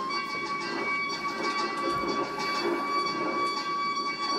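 One long, steady high note held without a break, just after a step up in pitch, from a performer with something held to his mouth.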